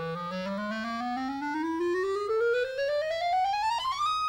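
A clarinet playing one long rising run, climbing steadily from its low register up about three octaves to a high note near the end.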